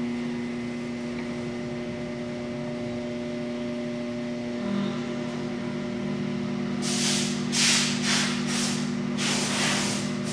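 Web-handling test stand running with a steady machine hum as the nonwoven web feeds through the nip rollers. From about seven seconds in, a run of five or six short, loud hissing bursts breaks over the hum.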